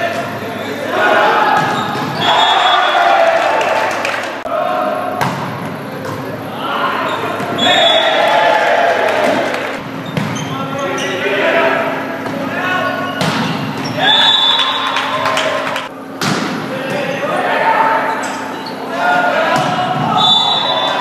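Volleyball play in a large gym: sharp slaps of the ball off players' hands and the hardwood floor, several times over, amid players' shouts and calls.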